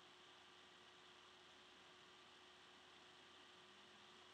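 Near silence: faint steady hiss with a thin low hum.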